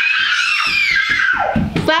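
A young child's long, high-pitched scream in playful fright, rising in pitch and then falling away.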